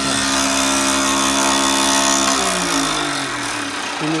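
Electric motor of a combination woodworking machine running with the horizontal boring attachment's drill chuck spinning: a steady hum with a hiss over it. A little over halfway through, the hum starts falling in pitch as the machine spins down.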